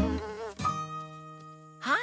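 Cartoon bee buzzing sound effect: a wavering buzz, then a long steady buzzing drone, and near the end a louder buzz that swoops up and back down in pitch.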